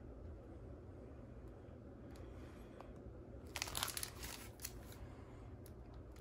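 Plastic shrink-wrap on an LP record jacket crinkling briefly as it is handled and turned, about three and a half seconds in, with a few faint clicks after it over a quiet room background.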